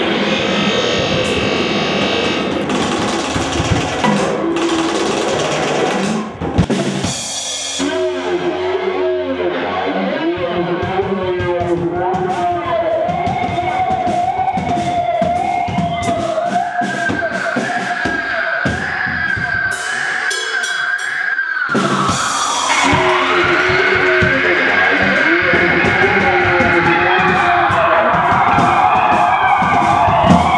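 Live drum kit and guitar playing loud, noisy rock: dense drumming at first, then the guitar holds long, wavering notes that slide in pitch over the drums from about eight seconds in. The band drops out briefly just past twenty seconds, then comes back in.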